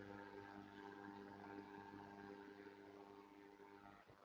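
Near silence, with only a faint, steady electrical hum on the line.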